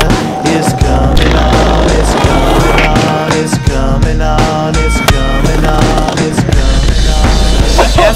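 Skateboard wheels rolling on stone paving and the board clacking on its tricks, heard over hip-hop music with a heavy, steady bass beat.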